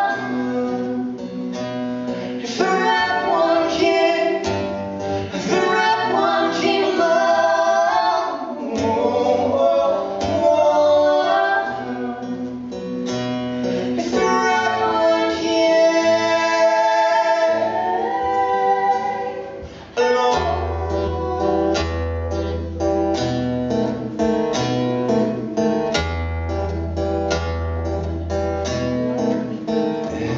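A live duet: a woman and a man singing with a strummed acoustic guitar. The music dips briefly about two-thirds of the way through, then goes on with fuller low guitar notes.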